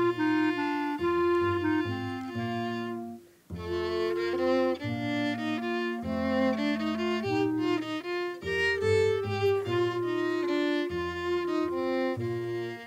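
Live folk-dance tune from a small band: a violin melody over a double bass, with a short pause about three seconds in before the tune starts again.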